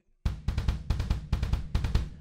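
Drum kit with double bass drum pedals playing the heavy metal gallop beat: kick drums in a repeating one-and-a figure under snare and cymbals. It starts a moment in and stops near the end.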